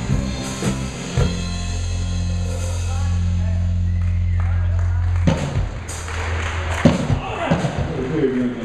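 Live rock band with drum kit and electric guitars ending a number: a few drum hits, then a final chord held for about four seconds that stops suddenly about five seconds in. Scattered drum hits and general noise follow.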